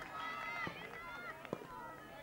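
Players' high-pitched voices calling out across a hockey pitch, with two sharp clacks of hockey sticks striking the ball, the first less than a second in and the second about halfway through.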